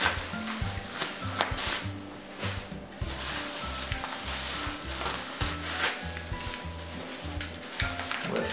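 Plastic bubble wrap rustling and crinkling in irregular bursts as it is pulled off and handled, over background music with a low bass line moving in stepped notes.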